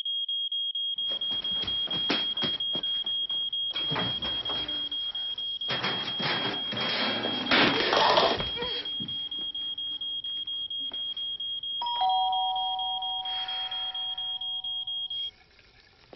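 A smoke alarm sounds one steady high-pitched tone that cuts off suddenly about 15 seconds in, over a rushing, splashing water noise that swells between about 4 and 9 seconds.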